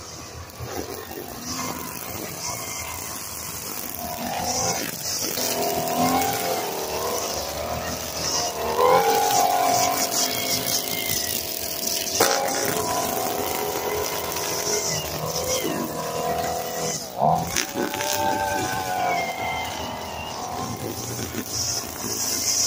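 Gas string trimmer engine running and revving up and down repeatedly as it cuts grass.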